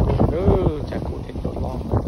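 A person speaking, with wind rumbling on the microphone.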